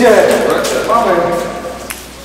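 Men's voices calling out and talking without clear words, loudest at the start and trailing off toward the end.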